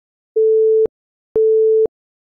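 Countdown-timer beep sound effect: a steady mid-pitched electronic tone, sounding twice, each about half a second long and a second apart, marking the seconds before the answer is shown.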